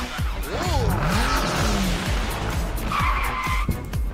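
Animated intro jingle: electronic music with a steady beat, overlaid with whooshing and swooping sliding-pitch sound effects, and a short high beep about three seconds in.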